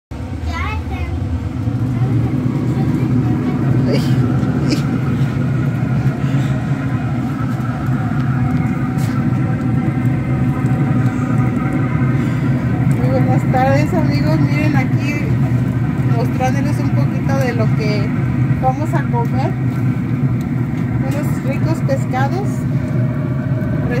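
A steady, loud low mechanical hum with several held tones, with people talking in the background from about halfway through.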